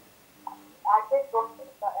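Speech only: after a brief pause, a voice begins asking a question in Turkish about a second in.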